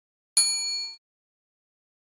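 Notification-bell chime sound effect: one bright ding with several ringing tones, struck about a third of a second in and dying away within about half a second.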